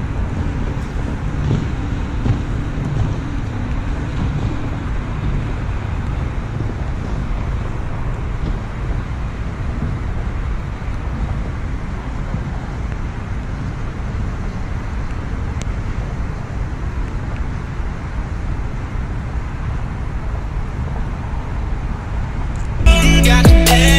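Steady wind rumble on the microphone with a constant low roar and no distinct events, slightly heavier in the first few seconds.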